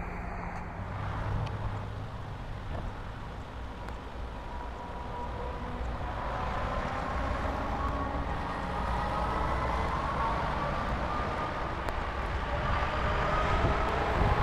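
Chrysler 200 retractable hardtop's power top mechanism running as the roof rises, sped up to double speed: a motor whine that climbs slowly in pitch over a low hum.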